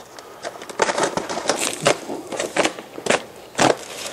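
Stanley knife cutting through aluminium-foil flexible duct, the foil crinkling in an irregular run of crackles and clicks.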